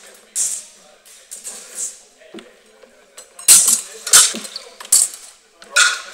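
Steel swords clashing in a sparring bout: sharp metallic strikes, one about half a second in and a few lighter ones, then a quick run of hard clashes in the second half.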